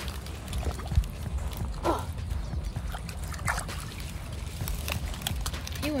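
Light splashing and sloshing of shallow pond water as a small bass is let go by hand at the bank, with a few scattered clicks.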